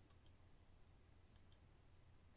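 Near silence, with a few faint computer mouse clicks about a quarter second in and twice around a second and a half in.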